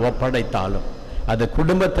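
Only speech: a man preaching a sermon in Tamil into a microphone.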